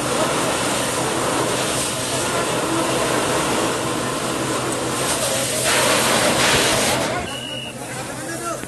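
Steady loud rushing hiss of a fire hose spraying water onto a burning shop, with voices underneath. The hiss swells about six seconds in and drops off sharply about a second later.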